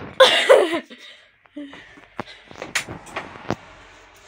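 A person coughs loudly once near the start. A few sharp clicks and knocks follow in the second half, as items are handled on the kitchen counter.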